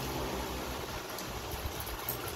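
A dog pawing at water in a plastic tub, the water sloshing and splashing, over a steady low rumble.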